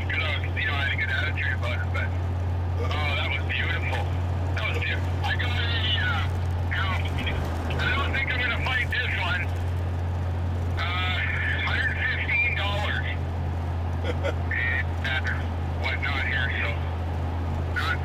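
Steady low drone of engine and road noise inside a pickup truck's cabin while driving at highway speed, with thin-sounding voices coming and going over it.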